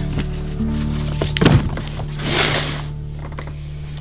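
Soft background music, with a single thunk about a second and a half in as the lid of a black plastic storage case is shut, followed by a brief rustling hiss.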